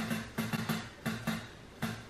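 Tabletop prize wheel's pointer flapper clicking over the pegs as the spun wheel slows down, the clicks spacing out further and further until it stops.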